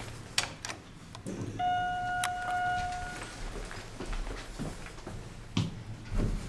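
Otis elevator's directional chime sounding one steady electronic ding for about a second and a half, with a sharp click partway through. Then a low rumble and knocks as the elevator doors slide open.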